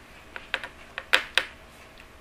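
A handful of short, sharp clicks or taps, about six in just over a second, the loudest about a second in.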